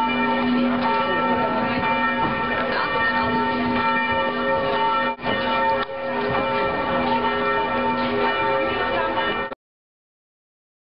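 Church bells pealing continuously, several bell tones sounding together and overlapping, with the murmur of people beneath; the sound cuts off suddenly near the end.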